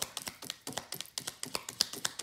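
Tarot cards being shuffled and handled: a quick, irregular run of light clicks and taps.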